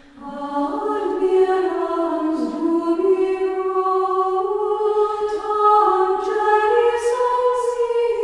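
A choir singing unaccompanied in slow, long-held notes. A new phrase begins right at the start after a brief pause, and the pitch steps upward over the first second.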